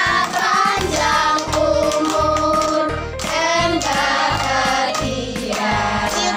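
A boy and a woman singing a birthday song together while clapping, over a steady low beat.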